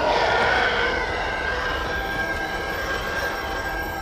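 Film sound effect of an approaching TIE fighter's engine: a rushing roar with a high whine that swells at the start and then holds steady.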